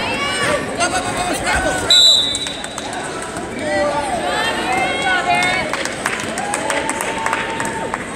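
Coaches and spectators shouting and calling out in a gym, with one short, shrill referee's whistle blast about two seconds in as the bout ends.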